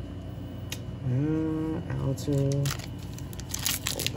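A man's short wordless hum in two parts, held at a steady pitch, while trading cards are handled on a play mat; near the end, a quick run of crisp clicks and crinkling from cards and a booster pack wrapper being handled.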